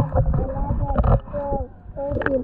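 Several people's voices talking over a low rumble, fading briefly near the end.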